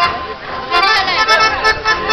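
Accordion-led folk dance music with voices over it. It dips briefly at the start and picks up again about three-quarters of a second in.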